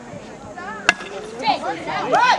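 Baseball bat striking a pitched ball: one sharp crack about a second in, followed by voices shouting.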